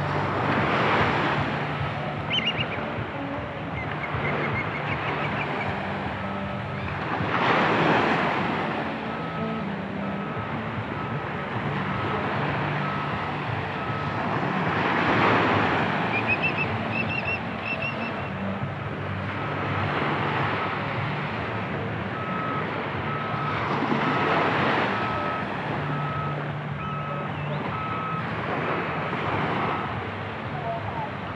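Small waves breaking on a sandy shore, swelling about every seven or eight seconds, over a steady low engine hum. From about nine seconds in a vehicle's reversing alarm beeps repeatedly, and there are a few short high chirps.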